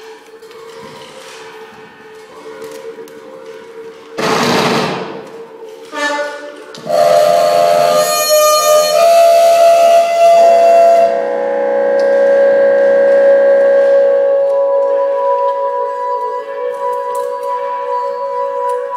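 Free-improvised experimental ensemble performance: steady held drone tones, broken by two short noisy bursts about four and six seconds in. A loud passage of noise and tones follows from about seven seconds and settles into steady ringing tones.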